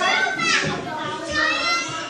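High-pitched children's voices calling out twice, the first call sliding down in pitch.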